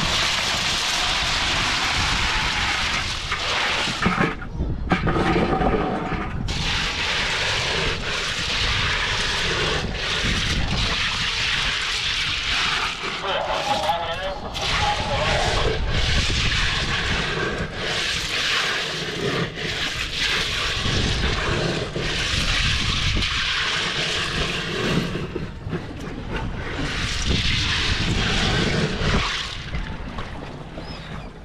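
Ice cubes poured from a bucket and packed into a bluefin tuna's body cavity to chill the meat: a long rushing, rattling noise with a few short breaks.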